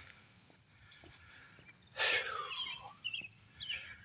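Outdoor ambience with a faint, rapid, high-pitched trill for the first second and a half. About two seconds in comes a loud, short breath or sniff close to the microphone, with faint bird chirps after it.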